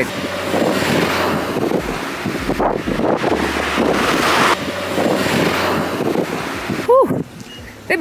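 A car driving past close by on a street, its tyre and engine noise mixed with a steady rush of wind on the microphone. The noise swells and then changes abruptly about halfway through.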